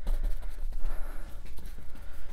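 Stiff bristle brush scrubbing and dabbing nearly dry acrylic paint onto a stretched canvas: a quick run of short scratchy strokes over a steady low hum.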